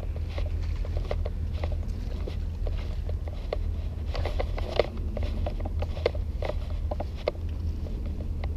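Steady low rumble of wind on a GoPro's microphone, with scattered light clicks and taps at irregular intervals.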